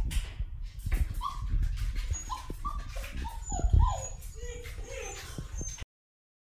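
Siberian husky puppy whimpering in a run of short, falling whines, mixed with clicks and knocks from the cage. The sound cuts off abruptly just before the end.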